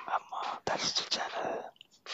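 Close, soft whispering in short breathy phrases, with a pen scratching on notebook paper as letters are written.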